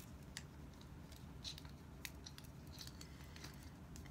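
Faint scattered clicks and light scraping of wire being threaded from a coil through a screw eyelet in a wooden marionette leg piece.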